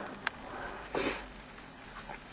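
A single short sniff close to the microphone about a second in, preceded by a light click.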